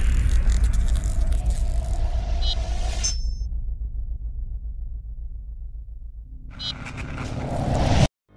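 Logo-intro sound design: a deep rumble under a bright hissing shimmer with a few short chime-like blips, the shimmer cutting off about three seconds in, then a rising swell that builds and stops abruptly at the end.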